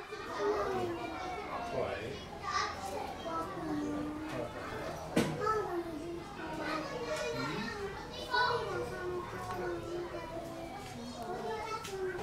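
Many children's voices chattering and calling out at once, with a single sudden sharp sound about five seconds in.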